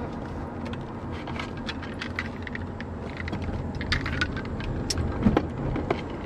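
Steady low rumble of a moving car heard from inside the cabin, with scattered light ticks throughout.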